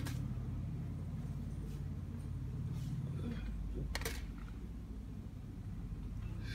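A steady low mechanical hum, with a sharp click at the start and another about four seconds in.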